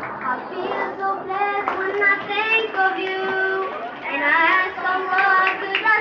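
Schoolboys singing into handheld microphones, their voices amplified through a PA, with a longer held note about halfway through.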